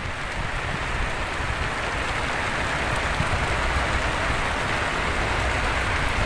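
Heavy rain falling steadily: a dense, even hiss.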